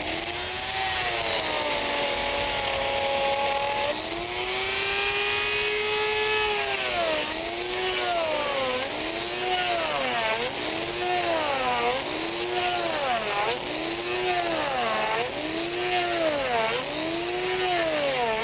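Hand-held electric die grinder cutting a groove into a block of ice. Its motor whine holds steady at first, then dips in pitch and recovers about once a second as the bit bites into the ice on each pass.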